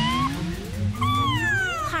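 Popplio, a cartoon seal Pokémon, giving its voiced cries: a short rising call at the start, then a longer falling call from about a second in.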